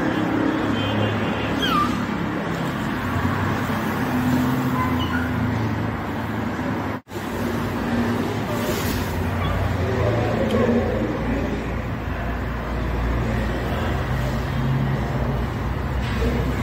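Steady background noise of road traffic with faint voices mixed in. The sound cuts out for an instant about seven seconds in.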